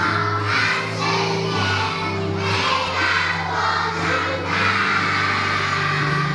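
A chorus of young kindergarten children singing a graduation song together over an instrumental accompaniment with steady bass notes, with audience noise mixed in.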